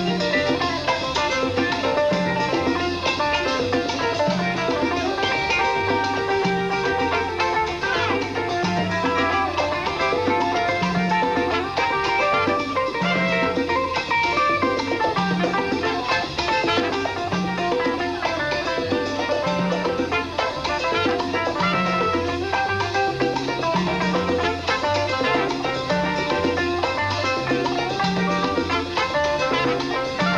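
A live Latin band plays a mambo instrumental section: saxophone, trumpet and violin carry the melody over upright bass and timbales. The bass repeats a low note about once a second.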